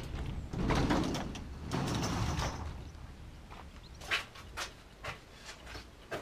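Metal garage door being pulled open, with a rumbling slide in two surges over the first few seconds, then a few light knocks.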